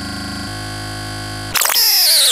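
Electronic DJ-mix sound effects: the beat cuts to a steady buzzing synth drone, then about one and a half seconds in a louder synth sweep starts, falling in pitch.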